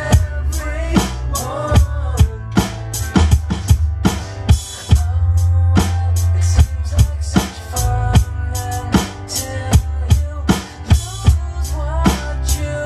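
Rock drumming on an Alesis electronic drum kit, a steady pattern of kick and snare hits with cymbals, played over a recorded rock song's instrumental passage with bass and a melodic line.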